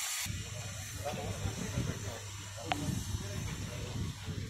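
Indistinct chatter of a group of people over a steady low hum, with a brief burst of hiss right at the start.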